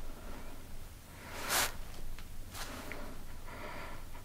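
Two short breathy hisses of a person exhaling or sniffing over quiet room tone, the first lasting about half a second about a second and a half in, the second shorter a second later.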